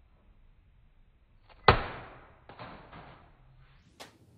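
A wooden drumstick strikes a plastic zip-lock bag held in a hand, one sharp smack that knocks the bag out of the hand, about two seconds in. Two softer knocks follow within the next second.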